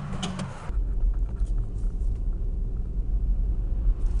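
Low rumble inside a car's cabin, beginning suddenly under a second in and then holding steady, after a few faint knocks.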